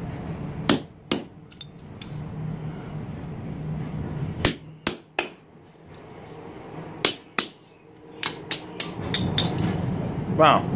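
Ball-peen hammer striking a hand-held steel punch on a red-hot steel bar laid on the anvil, punching a hole through the hot metal. About a dozen sharp metallic strikes come in groups of two or three with pauses between, the last group quickest, near the end.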